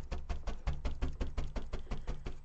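Needle felting multi-tool stabbing rapidly and evenly into wool tops on a felting mat, several short thuds a second, lightly felting down a butterfly's wings.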